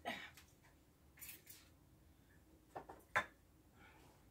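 Faint tabletop handling sounds: a brief soft hiss about a second in, then a few light clicks, the sharpest just after three seconds.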